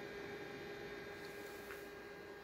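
A faint, steady hum with one held tone and no change across the pause.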